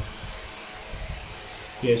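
Steady whir of a running room fan, with a man saying "yeah" near the end.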